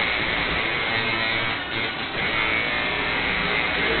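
An electric tattoo machine buzzing steadily against music playing in the background.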